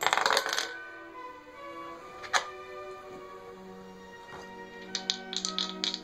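Background music plays under short bursts of clicking and clattering from small hard game pieces handled on a homemade board: a cluster at the start, a single click a little over two seconds in, and a run of quick clicks near the end.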